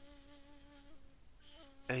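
A faint, steady buzzing hum with a few overtones, breaking off briefly about a second in.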